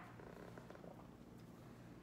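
Near silence: room tone with a steady low hum and a few faint soft ticks.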